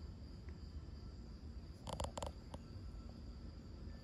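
Quiet shop room tone with a faint steady high whine. About two seconds in comes a short cluster of three or four light clicks as the digital calipers are set against the piston's wrist-pin bore.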